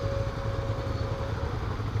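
A motorcycle engine idling with a steady low note in slow traffic. A faint steady whine runs alongside and fades out about one and a half seconds in.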